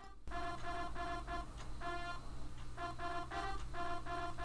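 A sampled trumpet (LMMS's trumpet01.ogg sample) playing a short melody from a piano-roll pattern: short separate notes, about three or four a second, mostly on one pitch with a few higher ones, in phrases with brief gaps. A faint steady low hum runs underneath.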